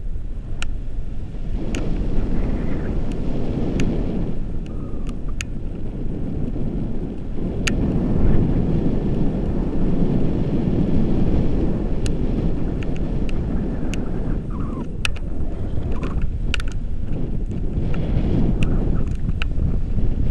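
Wind rushing over a camera microphone on a paraglider in flight: a loud, low rumble that swells and eases, with scattered sharp clicks.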